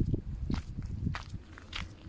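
Footsteps on stony ground and dry scrub while climbing a mountain slope, a step about every half second, over a low rumble.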